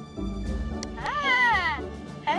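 Grogu ornament's recorded baby-Grogu voice giving one short coo that rises and then falls in pitch, about a second in, over background music.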